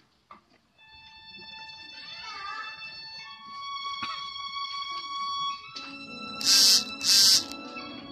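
Violin playing slow, high, sustained notes after a brief pause at the start, with a piano coming in underneath about six seconds in. Near the end two loud, short bursts of hiss close to the microphone stand out over the music.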